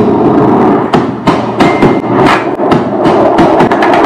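Loud sound effects of an edited video outro: a dense noise struck through by many sharp hits at irregular spacing.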